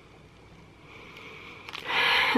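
A person sniffing through the nose, a breathy rush of air that starts faint about a second in and grows loud near the end.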